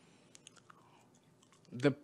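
A near-silent pause filled with a few faint, short mouth clicks picked up close on the podium microphone, then a man starts speaking again near the end.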